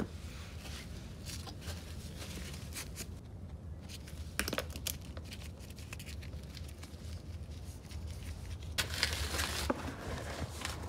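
Rustling handling noise from gloved hands and the hand-held camera, with scattered light clicks and a denser rustle near the end, over a steady low hum.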